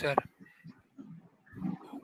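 A man's voice over a headset microphone: the tail of a spoken word at the start, a short pause with faint scattered sounds, then a low murmur near the end.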